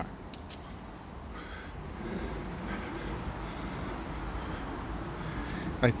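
Insects singing one steady, unbroken high-pitched tone, over a low steady rumble.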